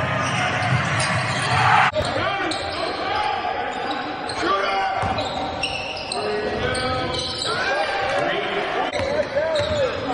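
Live game sound in a basketball gym: a ball dribbling on the hardwood, short squeaks of sneakers, and players and spectators calling out, echoing in the hall. The sound changes suddenly about two seconds in.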